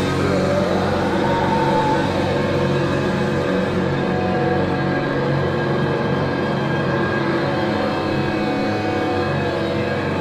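Live metal band playing a slow, sustained passage of distorted electric guitar and bass chords that ring out in a dense, steady wall of sound.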